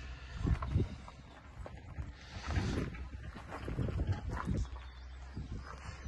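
Faint, irregular footsteps and low handling bumps of someone moving about.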